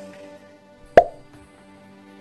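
Instrumental backing track holding steady sustained chords between sung lines of a pop ballad, with one sharp pop about a second in that is louder than the music.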